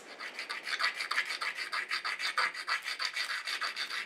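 A piece of quahog shell being ground by hand against a flat stone, shaping it: a quick, even run of gritty rasping strokes, back and forth.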